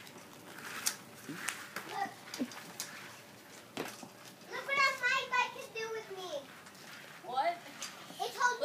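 A child's high-pitched voice calling out for about two seconds midway, with a shorter call near the end; a few sharp clicks come before it.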